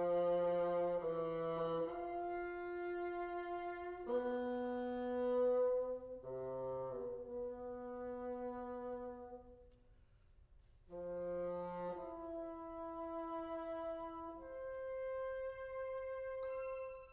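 Bassoon and string quartet playing slow, sustained chords, several long notes held together and changing every second or two, with a short break about ten seconds in before the chords return.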